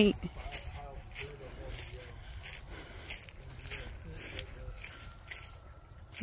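Footsteps walking over dry fallen leaves and grass at an even pace, about two steps a second.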